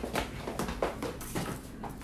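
Light footsteps and knocks, a few irregular taps about half a second apart, as someone moves to a table and sits down.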